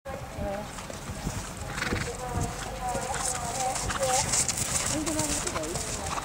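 Horse cantering on grass turf, its hoofbeats coming as irregular low knocks, with distant voices in the background.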